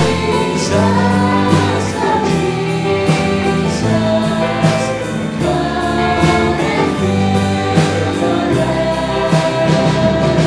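Three women singing a worship song in harmony through microphones, over instrumental backing with a steady beat.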